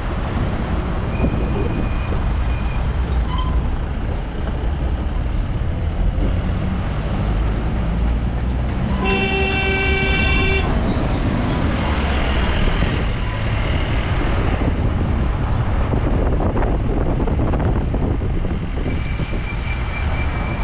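Steady road and engine rumble from a moving vehicle. About halfway through, a vehicle horn sounds once for nearly two seconds, and fainter short horn toots come near the start and near the end.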